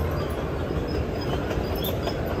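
A steady low rumble of outdoor background noise, with no clear single event.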